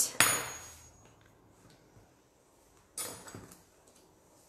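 A thin metal modelling tool set down on a hard worktable: a sharp clatter just after the start with a brief high metallic ring. A softer knock of handling follows about three seconds in.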